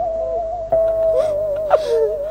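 Cải lương accompaniment music holding one long, slightly wavering note, with two short breathy sounds near the end.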